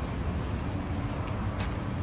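Steady low rumble of an idling truck engine, with a faint click about one and a half seconds in.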